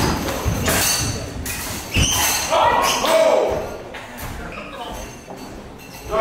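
Training longswords striking and clashing in a bout, several sharp knocks with a heavy thump about two seconds in, followed by a short shouted call.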